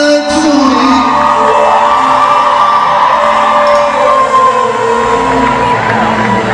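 Live band music with long held notes, and a crowd cheering and whooping over it.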